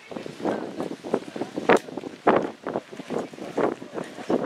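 Voices of a gathered crowd talking over one another, with wind on the microphone and a sharp knock a little under two seconds in.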